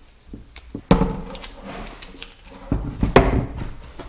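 Handling knocks as an 18-volt cordless drill battery is fitted onto a PVC air cannon lying on a workbench: a few light clicks, then louder thumps about a second in and again near three seconds.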